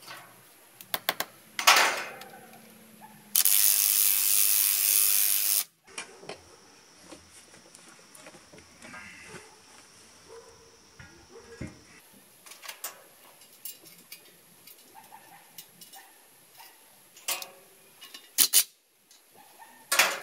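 A hammer drill runs steadily for about two seconds, drilling into concrete for a sleeve anchor. Before and after it come scattered sharp clicks and knocks as the steel bracket and tools are handled against the wall.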